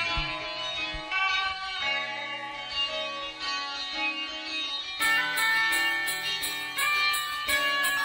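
Hip-hop instrumental beat built around a melody of plucked-string notes. About five seconds in, a fast, even ticking pattern joins high above the melody.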